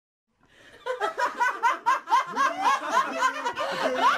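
High-pitched laughter in rapid repeated pulses, about four or five a second, starting just under a second in.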